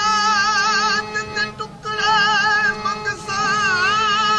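Qawwali singing: a qawwal holds long sung notes with a wide, wavering vibrato over steady instrumental accompaniment. The voice breaks off briefly between about one and two seconds in, then holds another long wavering note.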